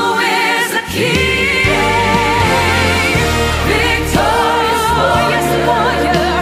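A choir sings a gospel worship anthem with orchestral accompaniment: sustained voices with vibrato over held low bass notes, briefly dipping a little under a second in.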